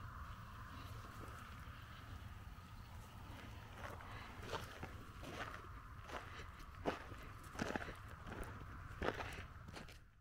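Faint footsteps on gravel: a few scattered steps, mostly in the second half, over a steady low rumble.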